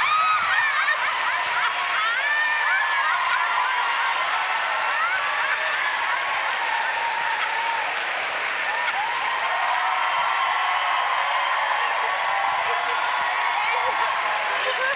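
Studio audience laughing, shrieking and applauding in one steady din, with a woman's high shrieking laughter over it, in reaction to a jump scare.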